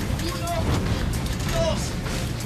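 Shouted voices of people outdoors, heard as a couple of short calls over a steady low rumble.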